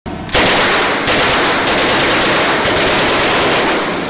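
Rapid rifle fire: shots follow so fast that they run together into a loud, continuous crackle, starting a moment in.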